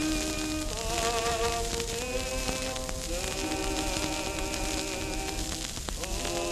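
A record playing on a record changer: a slow melody of long, slightly wavering held notes over steady surface hiss and crackle.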